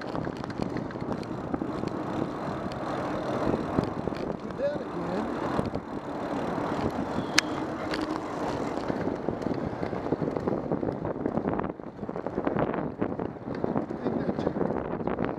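Steady rush of freeway traffic noise mixed with wind on the microphone of a bicycle-mounted camera riding beneath elevated freeways. A single sharp click comes about halfway through.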